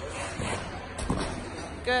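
Ice skate blades gliding and scraping on rink ice, with two short low knocks about half a second and a second in.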